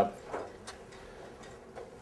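A pause in speech with room tone and a few faint, irregular clicks, after a short spoken 'uh' at the start.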